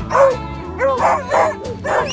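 Beagles held back by their collars, yelping in excitement: a quick run of about five short, rising-and-falling yelps, over background music.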